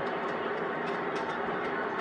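Steady crowd noise from a packed football stadium, an even roar with no distinct single cheers.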